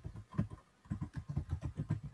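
Computer keyboard being typed on: a quick run of about ten key taps.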